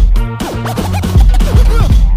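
DJ's breakbeat music with turntable scratching: quick rising and falling sweeps cut over a heavy, steady bass beat.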